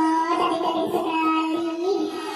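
A child's voice singing one long held note, steady with a slight waver, that lifts a little just before it stops near the end.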